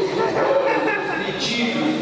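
Speech only: a man's voice speaking.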